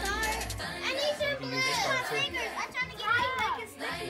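Young children's voices talking and calling out, with background music fading out about half a second in.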